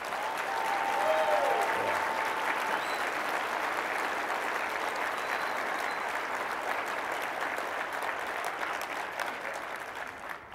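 An audience applauding steadily. The clapping builds over the first second, holds for several seconds and tapers slightly near the end.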